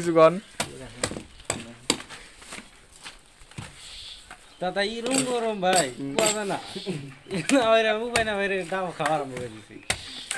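A man's voice in two stretches of talk in the middle and later part, over repeated short sharp knocks or clicks.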